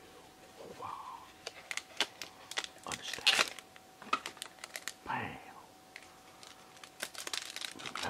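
Foil Pokémon TCG booster pack crinkling and crackling in the hands as it is torn open, the sharpest crackles about three seconds in.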